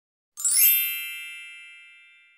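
A bright, many-toned chime sound effect with a sparkling shimmer on top, struck about a third of a second in and then ringing out, fading slowly.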